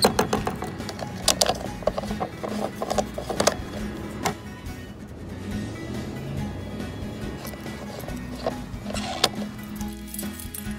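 Background music with a steady low pattern, overlaid by several sharp clicks and knocks, most of them in the first half and a couple near the end.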